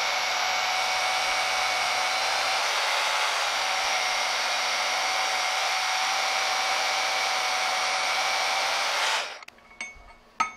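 Band saw running steadily with a steady whine as a metal block is fed into its blade. The saw cuts off about nine seconds in, followed by a few light clicks.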